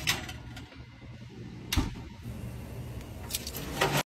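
Metal sheet pan and oven rack sliding and clattering as the pan goes into the oven, with one sharp metallic clunk about two seconds in and a couple of smaller knocks near the end.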